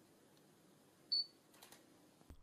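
A Panasonic Lumix camera's short, high autofocus-confirmation beep about a second in, signalling that focus has locked, followed by a faint shutter click.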